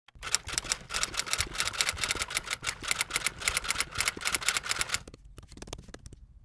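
Keyboard typing: a fast, even run of key clicks that thins out to a few scattered taps near the end.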